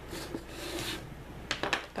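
Plastic marker barrels being handled: a soft rustle of paper and cardboard, then a few light clicks as the markers knock together and against the table.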